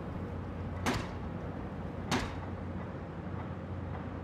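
Two sharp blows of a pile-driver hammer striking a foundation pile, about a second apart, over a steady low hum.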